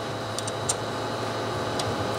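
A few light metal clicks as a bolt is slid back through a suspension toe-arm mount, over a steady background hum.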